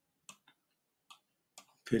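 About four short, faint clicks, scattered irregularly, then a man's voice starting near the end.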